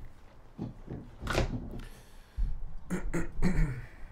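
Short breathy mouth sounds and low pops close on a microphone with a pop filter, a few separate bursts, with the start of a spoken word near the end.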